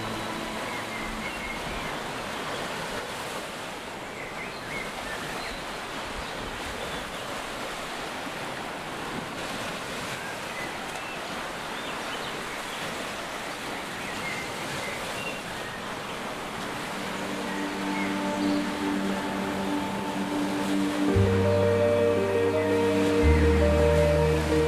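Steady wash of waves on a lake shore, with a few short faint bird chirps. Soft music with long held notes fades back in past the halfway point and grows louder, with a bass line, near the end.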